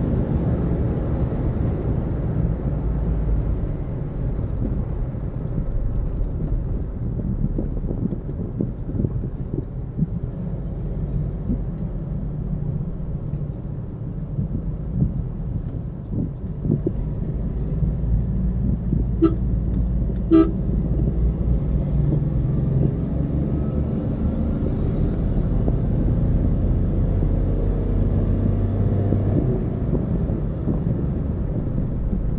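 Steady low road and engine rumble heard inside a moving car's cabin at highway speed, with two short horn toots about a second apart roughly two-thirds of the way through.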